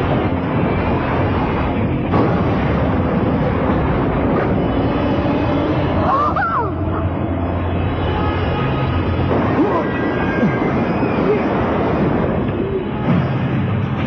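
Cartoon soundtrack: background music mixed with a continuous, dense machine-vehicle sound effect with a steady low hum, as a robotic vehicle drives.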